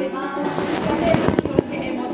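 Live stage performance: actors' voices and a strummed ukulele, broken by several sharp, irregular knocks.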